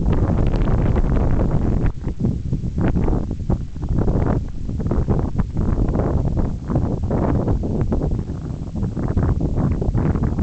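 Wind buffeting the camcorder microphone: a loud, gusty low rumble that swells and dips irregularly.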